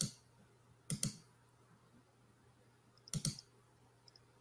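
Sharp computer clicks come in three quick pairs, at the start, about a second in and just past three seconds: someone clicking through presentation slides while looking for one.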